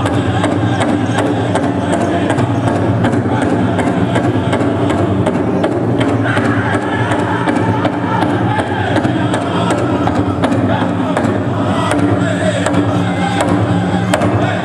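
Powwow drum group singing a women's buckskin contest song: voices in unison over a steady, even beat on a shared big drum, with crowd noise underneath.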